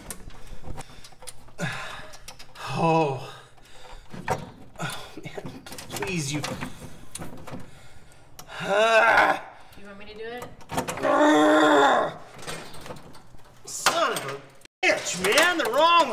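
A man's wordless straining groans and mutters while he wrestles a heater unit into place under a dashboard. Small knocks and clicks of the unit and its bolts being handled come in between.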